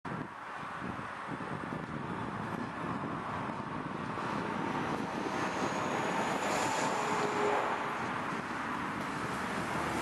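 Distant freight train led by diesel locomotives approaching, a steady noise slowly growing louder.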